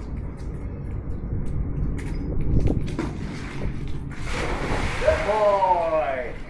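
A dog jumping into a backyard swimming pool: a loud splash about four seconds in, then a person's drawn-out exclamation that falls in pitch near the end.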